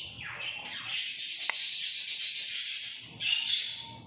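Pet parrots screeching in the background: shorter high calls at first, then one loud, harsh screech from about a second in lasting some two seconds.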